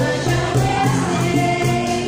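Live acoustic band: two female voices sing into microphones over two strummed acoustic guitars and a steady cajón beat.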